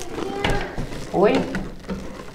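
Toiletry bottles being put away on the glass shelves of a bathroom cabinet: one sharp knock about half a second in as a bottle is set down, and a woman says "Oi?"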